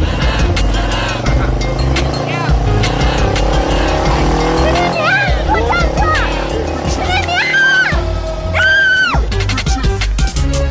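A cruiser motorcycle engine pulls away over background music. A woman shouts twice near the end.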